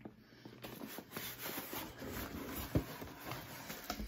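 Cardboard subscription box being opened by hand: steady rustling and scraping of the lid and flaps, with a light knock about two-thirds of the way through.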